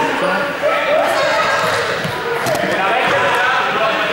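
Rubber playground balls bouncing and hitting the gym floor, a few separate hits, under the overlapping voices of many students calling out, all echoing in a large sports hall.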